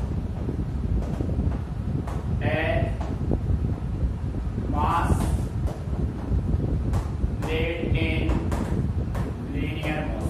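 Chalk clicking and scraping on a blackboard as a sentence is written out, with a man's voice in short, drawn-out fragments, likely reading the words aloud as he writes, over a steady low rumble.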